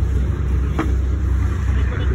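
A boat engine idling with a steady low rumble, and one short click a little under a second in.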